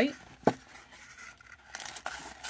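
Foil trading-card pack crinkling as it is handled, with one sharp tap about half a second in and more rustling near the end.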